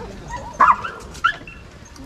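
A dog barking twice, two short barks less than a second apart.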